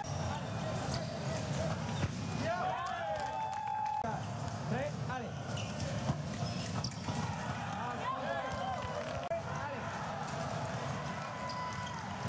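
Fencers' shoes squeaking and stamping on the piste during foil bouts, in short bursts of quick gliding squeaks with sharp footfalls, over the voices and murmur of a large competition hall.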